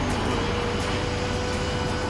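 Ship under way in rough seas: a loud, steady low rumble of wind and water rushing along the hull, with a thin steady hum that starts about half a second in and stops near the end.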